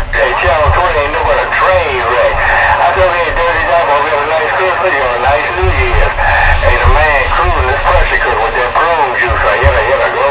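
Garbled CB radio voices, several stations talking over one another, under a continuous hiss of static and a low pulsing rumble.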